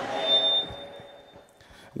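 A pause in a man's amplified speech in a large hall: the tail of his voice and a few faint steady tones, one of them thin and high, die away over the first second and a half.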